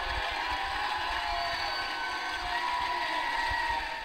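Studio audience cheering, a steady crowd noise.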